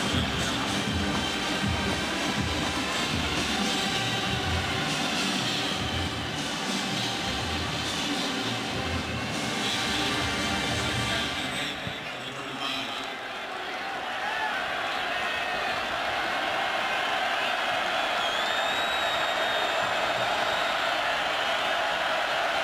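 Music with a steady beat for about the first half. After a brief dip about twelve seconds in, it gives way to the steady noise of a large football stadium crowd.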